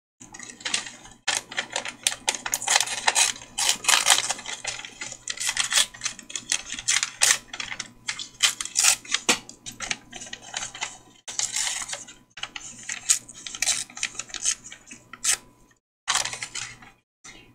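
Paper rustling and crinkling with light irregular taps, as small cut paper scraps are handled and pulled out of a paper envelope.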